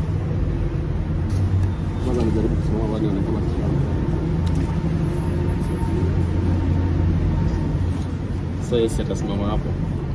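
Road traffic: a steady low engine rumble that grows stronger in the middle, with short snatches of voices about two seconds in and near the end.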